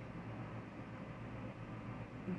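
Steady background hiss with a constant low hum, with no distinct events: the room's noise floor between words.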